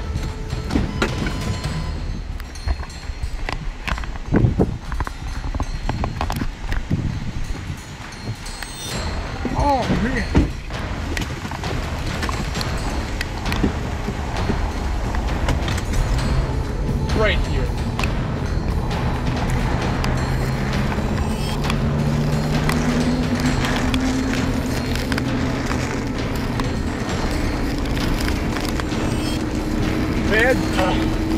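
Severe thunderstorm wind gusts buffeting the camera and rain pelting the car, a loud, rough rush broken by many crackles and knocks. In the last ten seconds a car engine speeds up steadily as the car pulls away.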